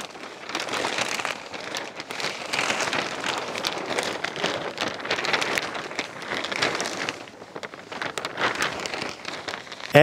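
Large sheet of 6 mil black plastic rustling and crackling in uneven surges as it is pulled and spread over the ground.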